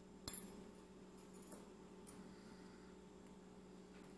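Near silence over a steady low hum, with one sharp, small clink about a quarter of a second in and a softer one about a second and a half in, as of a hard object lightly touching a stone countertop.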